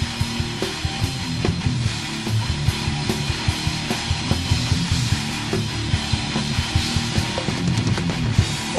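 Thrash/death metal band playing an instrumental passage: distorted electric guitars, bass and a drum kit with fast, dense drumming.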